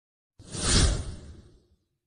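A whoosh sound effect for a logo intro: a single rush with a deep rumble under it. It begins just under half a second in, swells quickly and dies away before the end.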